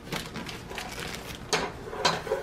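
Butter crackling faintly as it melts in a pot, with the rustle of a plastic marshmallow bag being picked up near the end.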